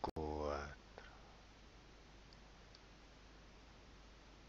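A short wordless vocal sound from a person, under a second long, cut by a brief dropout in the call audio and rising in pitch at its end. After it there is a faint click, then only low steady background hiss.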